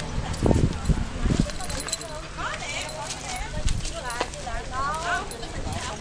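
Indistinct voices talking, with a few low thumps in the first second and a half.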